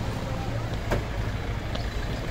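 Steady street traffic noise with a low rumble of vehicles and a single sharp click about a second in.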